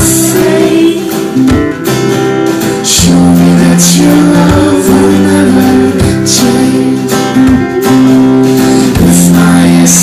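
Live pop band playing: a woman sings over a strummed acoustic guitar, with sustained low notes beneath and a regular beat about once a second. The sound is loud and full.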